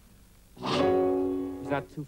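A man's voice holding one long, steady, melodramatic note, a cry sung out for about a second and then fading.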